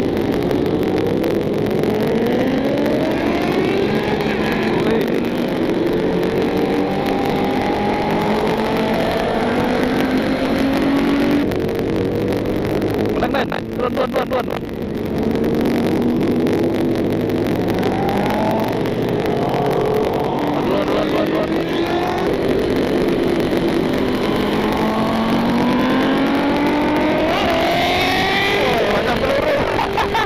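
Sport motorcycle engines accelerating hard: the pitch climbs and drops back several times as the bike shifts up through the gears, over steady road and wind rush. About halfway through, the engine note briefly falls away and the sound flutters before it picks up again.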